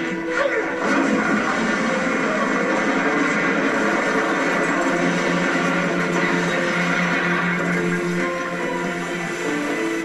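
Tense dramatic score with held notes, played through a television speaker during a fight scene, with a man grunting.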